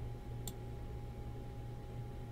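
A single short computer mouse click about half a second in, over a steady low electrical hum.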